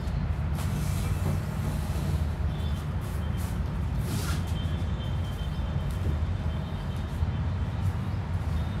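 Steady low rumble throughout, with a few soft swishes of a grass broom sweeping a marble floor.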